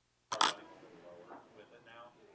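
Silence broken about a third of a second in by a sharp click, followed by faint, indistinct voices.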